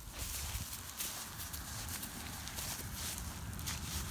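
Footsteps and rustling through dry, dead grass: a run of irregular soft crunches over a low rumble on the microphone.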